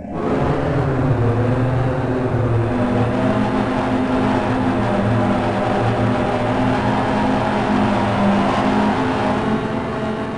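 RTGS-X granular synthesizer putting out a harsh, dense noise drone with a buzzing layer of low pitched tones, steered by the motion of a webcam-tracked object. It comes in suddenly, holds steady, and eases off slightly near the end.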